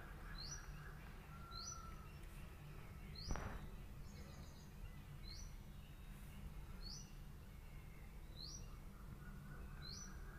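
A bird calling with a short, rising chirp, repeated about every second and a half, over a faint steady low hum, with a single sharp knock about three seconds in.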